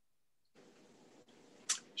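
A gap in a video-call conversation: dead silence at first, then the faint hiss of an open microphone from about half a second in, and a short 'sh' as the next speaker begins just before the end.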